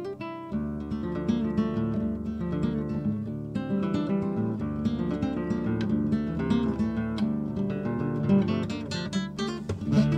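Intro music: an acoustic guitar, plucked and strummed, playing a steady run of notes.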